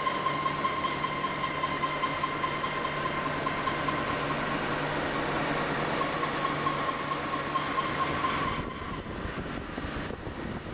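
Shake-table test machinery running with a steady high whine, a low hum and a rush of noise, all cutting off suddenly about eight and a half seconds in as the shaking run ends.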